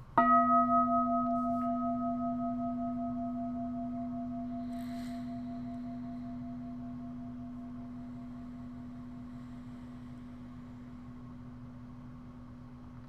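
Singing bowl used as a mindfulness bell, struck once with a wooden striker. It rings with a strong low hum and several higher overtones. The higher ones fade within a few seconds, while the low tone wavers and dies away slowly.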